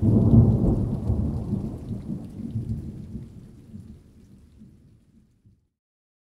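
A thunderclap: a sudden loud, low rumble that rolls and fades away over about five and a half seconds, with a faint hiss above it.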